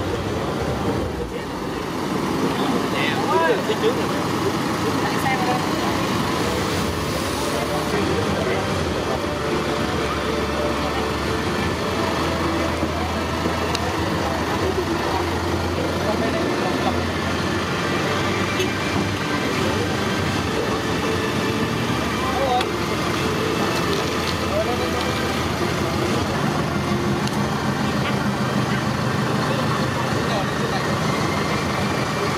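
Busy outdoor ambience: background voices over the steady hum of vehicle engines running.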